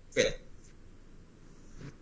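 A man's brief vocal sound: one short, clipped syllable near the start, then low room tone heard over a video call.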